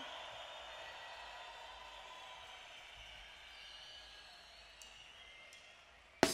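A lull between songs at a live amplified concert: faint hiss with a few thin lingering tones from the stage sound that slowly fade away, the whole sinking toward near silence.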